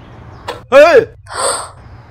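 A man's sharp cry of "hey!", followed about half a second later by a breathy gasp.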